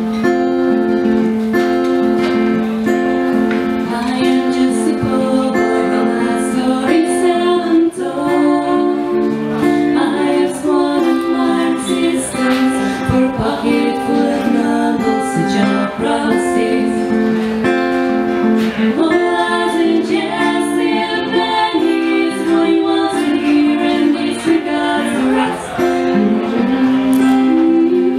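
Acoustic guitar played live in a steady, repeating chord pattern, a strummed instrumental passage.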